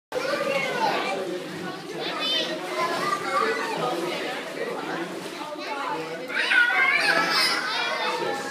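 Many children's voices shouting and chattering over one another in an indoor swimming pool hall. Louder, high-pitched shouting comes about six seconds in and lasts about a second.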